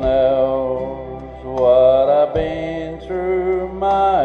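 A man's voice singing a slow country gospel song in long held notes over a steady instrumental backing.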